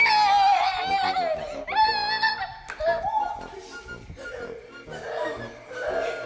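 High-pitched wordless shrieks and wails from a woman's voice, long cries that slide up and down in pitch, loudest in the first two and a half seconds and rising again near the end.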